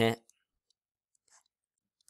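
A man's voice ends a word just at the start, then near silence broken only by a couple of very faint short ticks.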